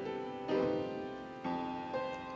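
Upright piano played solo: chords struck about half a second in and again near one and a half seconds, each left to ring and fade.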